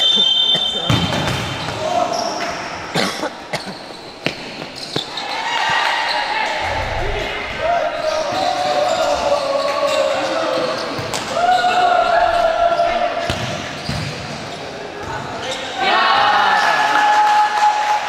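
Futsal match sounds in an echoing sports hall: the ball being kicked and thudding on the court floor, with players and onlookers shouting drawn-out calls several seconds in and again near the end.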